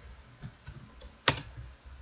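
Computer keyboard typing: a few light key clicks, with one sharper keystroke about a second and a quarter in.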